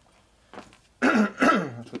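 A man clears his throat, two loud rasps about a second in, after a second of quiet, running straight into speech.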